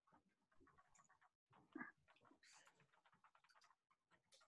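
Near silence: faint background rustles picked up by open microphones on a video call, with one brief, slightly louder sound a little before the middle.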